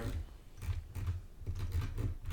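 A few faint, irregular clicks from a computer keyboard and mouse being worked, over a low steady hum.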